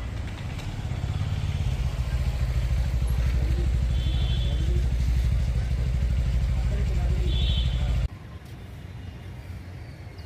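A motor vehicle engine running close by: a steady low rumble with a fast even pulse, and two short high tones about four and seven and a half seconds in. The sound cuts off abruptly about eight seconds in, leaving quieter outdoor ambience.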